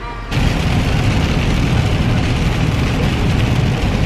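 Loud, steady low rumble of road noise inside a moving car's cabin, coming in suddenly about a third of a second in.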